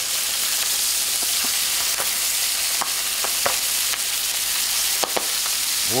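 Bone-in chicken pieces sizzling in hot oil over high heat in a cast-iron pot, a steady hiss. A few short knocks and taps sound as onion wedges are dropped in among the chicken.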